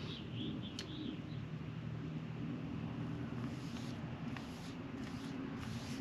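Paintbrush spreading a thick rust-sealing coating on a steel car frame: soft swishing strokes, about one or two a second in the second half, over a steady low hum.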